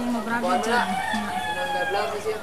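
A rooster crowing, a long drawn-out call near the end, with a person talking over it.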